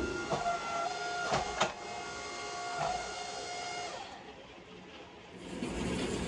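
Hydraulic forging press running with a steady whine for about four seconds, with two sharp metallic clanks about a second and a half in. It fades, then a low steady hum sets in near the end.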